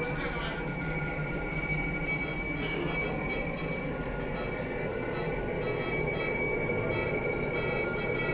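Steady machine hum with two high, steady whining tones over it, unbroken throughout.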